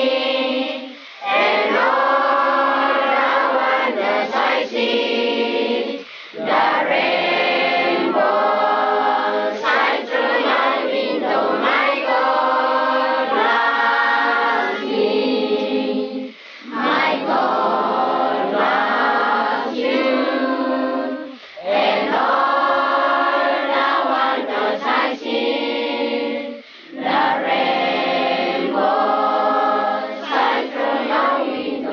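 A group of voices singing together in chorus, in phrases several seconds long with short breaks between.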